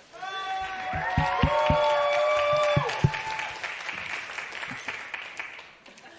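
Several voices hold a drawn-out cheer together over evenly spaced thumps for about three seconds, then applause.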